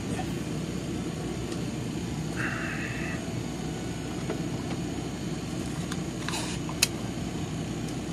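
Airbrush compressor running with a steady low hum. A brief higher hiss comes about two and a half seconds in, and a single sharp click near the end.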